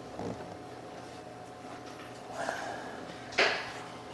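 An electrical connector being pushed back onto the EVAP vent solenoid by hand: faint handling scuffs, then a short plastic snap-and-scrape about three and a half seconds in as it seats, over a low steady hum.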